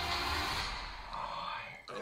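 Dramatic film-trailer score with deep bass and a steady high drone, fading out about half a second in. A faint voice follows, then a sharp click near the end as the trailer cuts to black.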